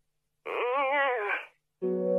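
A single wavering note with heavy vibrato, rising and then falling over about a second, starting about half a second in. After a brief silence, a steady held tone begins near the end.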